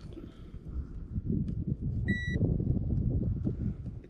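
Handheld digital fish scale giving one short, high beep about two seconds in, over a low, uneven rumble.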